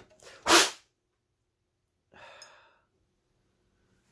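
A man's short, loud burst of breath about half a second in, followed by a softer breathy exhale about two seconds in.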